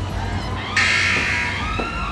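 Game-show time-up buzzer sounding abruptly for under a second as the countdown clock runs out, over background music.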